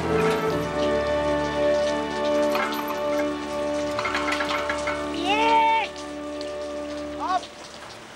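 Steady rain falling on gravel, under background music of long held notes that stops near the end. A short rising cry is heard about five seconds in.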